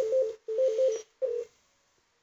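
Softphone ringing tone over the speaker while an outgoing call to a conference bridge rings: a warbling two-pitch tone in three short bursts. It stops about a second and a half in as the call is answered.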